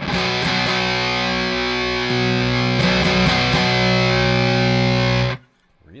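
Nash T-57 Telecaster played through a Walrus Audio Jupiter fuzz pedal with its bass boost switched on, into a Morgan RCA35 amp: sustained, heavily fuzzed chords that change about two seconds in, then are cut off suddenly near the end. The bass boost is plainly heard in this clipping mode.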